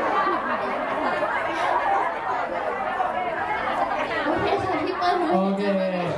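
A crowd of many people talking at once in a large hall, with a single voice rising above the hubbub in the last couple of seconds.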